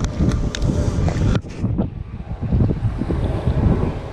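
Wind buffeting the camera microphone as a fluctuating low rumble, with a few sharp clicks and rustles of handling in the first second and a half.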